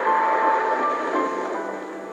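Film score from the TV soundtrack, a melody of held notes, with a car driving mixed in, heard through a CRT TV set's speaker.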